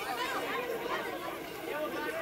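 Several people's voices talking and calling over one another, unintelligible chatter with no single clear speaker.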